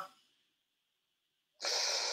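Silence, then about one and a half seconds in a short, breathy rush of air lasting about half a second: a person drawing or letting out a breath before speaking.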